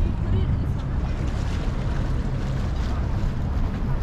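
Wind buffeting the microphone, a steady low rumble, with faint voices of passers-by behind it.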